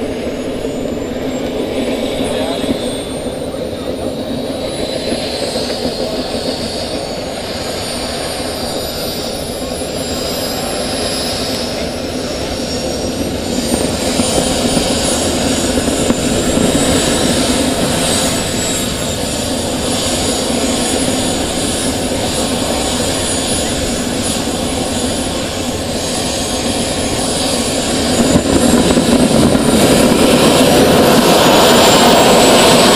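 Model jet's kerosene gas turbine running on the ground with a steady high whine. About halfway through the whine rises and falls back in pitch, and near the end the turbine spools up, rising in pitch and getting louder.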